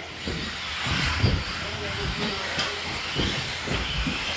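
1/10-scale electric 2wd RC buggies running on an indoor carpet track: a steady hiss of brushless motors, drivetrains and tyres, with occasional low thumps.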